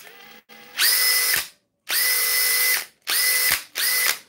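Makita brushless cordless drill run at top speed in about four short trigger bursts, its motor whining steadily in each. At least two bursts end abruptly with a sharp snap from the drill's instant electronic brake, which is normal for a high-rpm tool.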